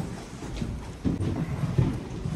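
Footsteps of several people going down a carpeted staircase and onto a corridor floor: a run of irregular low thuds a few tenths of a second apart.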